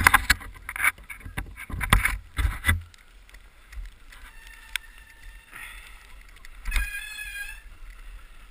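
Mountain bike knocking and clattering as it is handled on the snow for about three seconds, then rolling quietly down a snow-covered trail. A few brief high squeals come in the middle and near the end.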